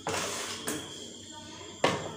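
Plastic spatula scraping and stirring dry gram flour in a bowl, with a sharp knock near the end.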